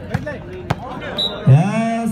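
Two sharp smacks of a volleyball being struck, about half a second apart. Then, near the end, a man's voice calls out loudly and holds the call.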